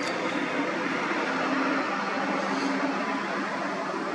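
Steady background noise of distant vehicles, with a faint low hum that comes and goes.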